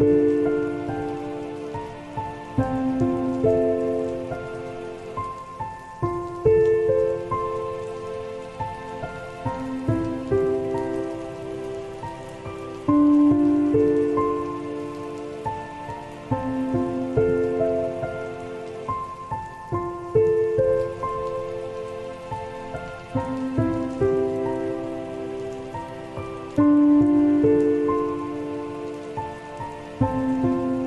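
Slow, soft solo piano playing notes and chords that are struck and left to ring out, over steady rainfall. The loudest chords come about every six or seven seconds.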